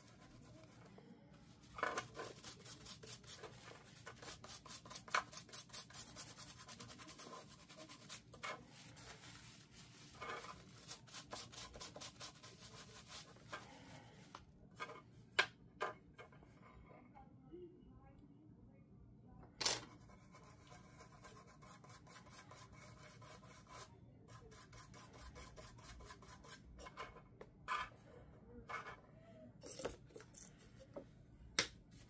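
Toothbrush bristles scrubbing a wet key fob circuit board in rapid back-and-forth strokes for about ten seconds, then a few scattered clicks and taps.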